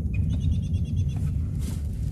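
Steady low hum of a vehicle idling, heard from inside the cabin, with a quick run of short high-pitched chirps in the first second.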